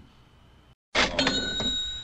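Bell sound effect: a short clatter about a second in, then a clear ring of several steady tones that lasts about a second.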